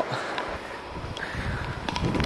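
Wind rumbling on the microphone outdoors, with a few faint ticks.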